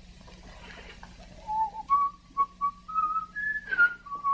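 A tune whistled over a faint steady hum, starting about a second and a half in: a run of short notes that steps upward in pitch.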